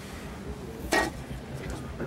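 A single short, sharp clink about a second in, over low crowd murmur.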